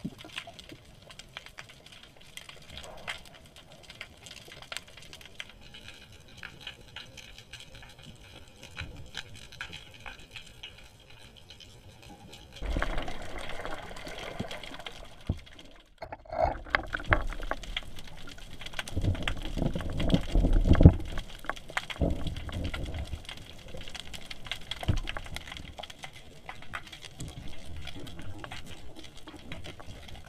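Underwater ambience picked up by a submerged camera: faint crackling clicks at first, then from about twelve seconds in louder water sloshing and low rumbling surges against the housing, with a brief dropout near the middle.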